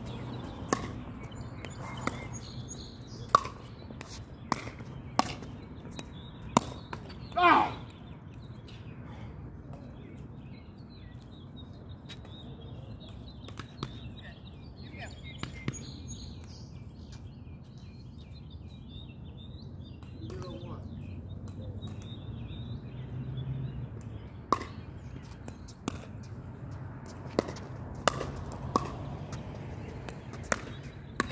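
Pickleball rally: sharp pops of paddles striking the plastic ball, roughly one a second for the first seven seconds. A brief loud gliding cry comes about seven and a half seconds in, then a lull, and the pops start again for the last six seconds as the next rally gets going.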